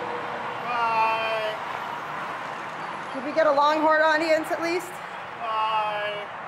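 Improvised live music: three short phrases of held, slightly wavering pitched tones, the middle one longest and loudest. Steady road traffic noise runs underneath.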